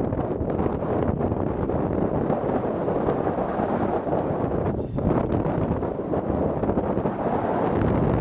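Strong wind buffeting the microphone: a loud, steady rushing rumble, briefly easing just before five seconds in.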